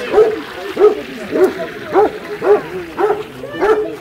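A hound-type dog barking in a steady series of short yelping barks, a little under two a second.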